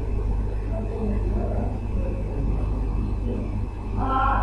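A steady low hum of background noise, with faint indistinct sounds over it.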